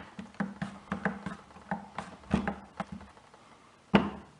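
A potato being sliced on a plastic mandoline slicer with a hand guard: a quick series of slicing strokes, about three or four a second, that stops about three seconds in. A single sharp click follows near the end.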